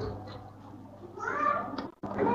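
A brief, faint, high-pitched call whose pitch bends, a little past halfway, against quiet room tone.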